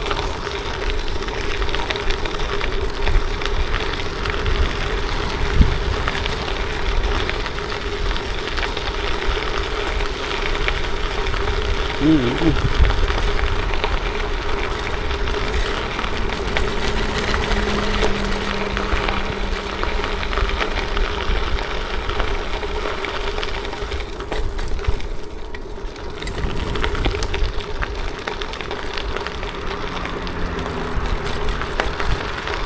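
Tyres rolling over a gravel track with wind on the microphone, a continuous rough rushing noise with a steady low hum under it.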